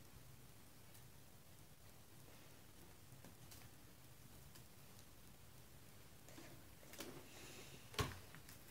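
Near silence: faint room tone, with a few light taps near the end from a plastic measuring scoop being worked in a tub of powder.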